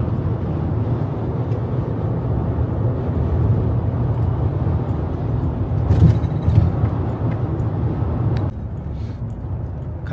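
Steady engine and road noise inside the cabin of a 2002 camper van cruising at freeway speed, with two sharp knocks about six seconds in as the tyres cross a road joint. Near the end the noise drops suddenly to a quieter drone.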